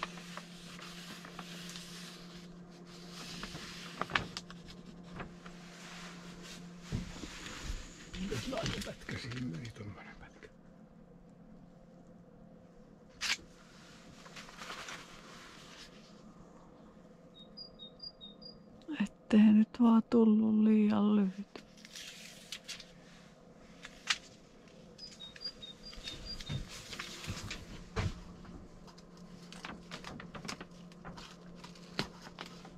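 Rustling and crinkling of a foil vapour barrier with scattered clicks as tape is pressed along its seams, under a steady low hum. About two-thirds of the way through, a short loud stretch of a voice stands out.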